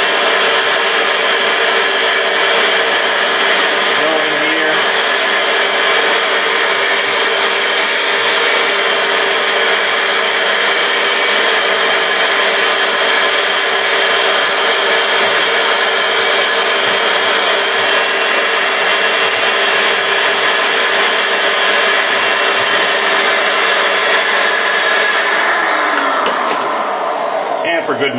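Vacuum cleaner running loudly and steadily, sucking leftover glass fragments from a burst bulb out of the crevices inside a lighting fixture. Near the end its motor winds down with a falling whine.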